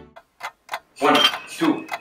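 A few short clicks, then from about a second in a man counting chest compressions aloud at about two counts a second, the pace of infant CPR.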